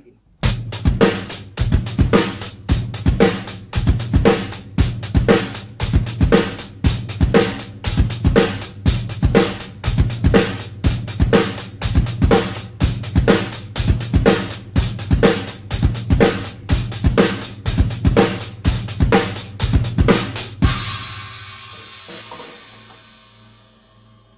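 Acoustic drum kit playing a steady groove that combines two hand-and-foot independence beat patterns. The groove runs for about twenty seconds, then ends on a cymbal that rings out and fades.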